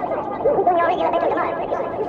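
A looped spoken-voice sample chopped and warped by a sampler or synth, so the words come out as a garbled, warbling babble rather than clear speech. It sounds muffled and thin, as if taken from an old recording.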